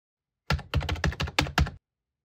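A quick run of about eight computer-keyboard keystrokes, starting about half a second in and lasting just over a second.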